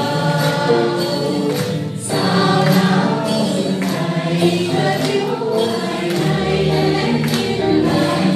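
Live band music with singing, several voices together, over percussion.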